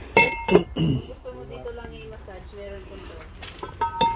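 Stemmed wine glasses clinking against each other as they are handled, each knock leaving a short bright ringing tone. There are two clinks close together near the start and another near the end.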